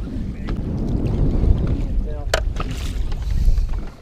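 Low, steady rumble of wind on the microphone and choppy water against a fishing boat's hull, with a brief voice a little over two seconds in.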